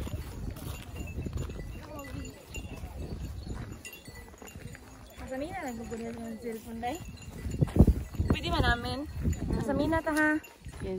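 A low rumble on the phone's microphone during a walk. In the second half comes a woman's voice in long, quavering, up-and-down tones, with a short knock just before its most wavering stretch.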